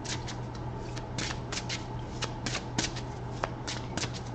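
A deck of tarot cards being shuffled by hand: a quick, irregular run of short papery flicks and slaps of card on card. A steady low hum sits underneath.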